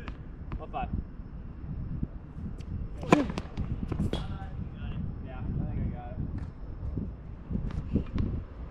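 Tennis ball struck by a racket: a sharp pop about three seconds in, the loudest sound, followed by another hit or bounce about a second later and one more near the end, with faint voices in the background.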